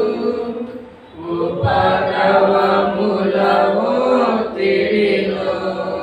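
A church congregation singing a Telugu hymn together in long sung lines, with a short break between phrases about a second in.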